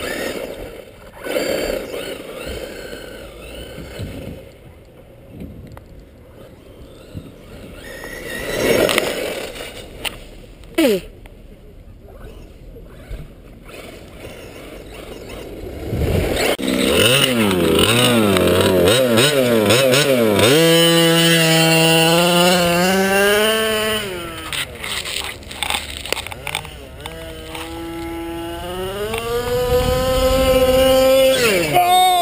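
Large-scale RC Baja buggy running on a dirt track: at first mostly rough tyre and drive noise, then, once the buggy is close about halfway through, its motor note rises and falls sharply with the throttle, holds high for a few seconds, drops, and climbs again near the end.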